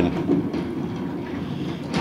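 Plastic lottery balls tumbling in the rotating clear drum of a lottery drawing machine, a steady low rumble with faint fine ticks.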